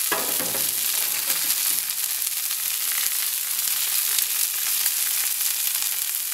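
Marinated chicken breasts frying in olive oil on a hot barbecue plate: a steady, crackling sizzle, joined by sliced vegetables being laid onto the plate beside them.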